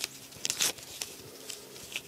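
A sheet of paper torn by hand, with one short rip about half a second in, followed by faint rustling and handling of the paper.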